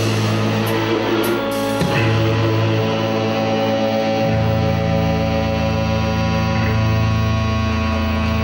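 Live rock band's electric guitar and bass holding long, sustained notes that ring on, with a last drum hit about two seconds in and no drums after it.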